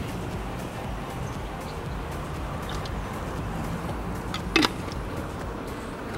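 Steady outdoor city background with a low traffic hum and faint music under it, broken once by a brief sharp sound a little after four and a half seconds.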